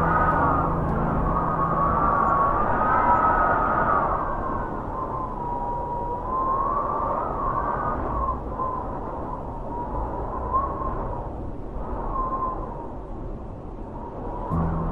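Wind howling in gusts: a rushing noise with a whistling tone that wanders up and down, strongest in the first few seconds and easing off toward the end.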